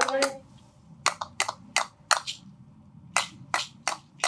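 A sung phrase of a traditional Central Province song ends, then sharp hand-percussion strikes come in an even beat, about three a second, in two sets of four with a short pause between them.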